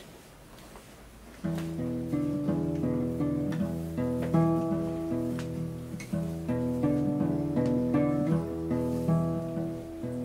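Solo acoustic guitar playing an instrumental passage, starting about a second and a half in after a brief quiet moment and continuing as a steady run of picked notes and chords.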